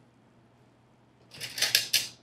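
A brief crackling scrape, under a second long and starting about one and a half seconds in: a metal spatula and tongs working roasted potato and mushroom on a parchment-lined sheet pan.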